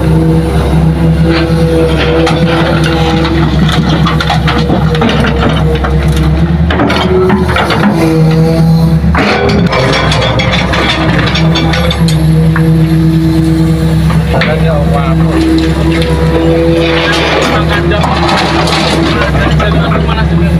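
Hitachi hydraulic excavator's diesel engine running steadily under working load, its hum dropping out and coming back every few seconds as the arm digs and swings, with a few short stretches of clatter.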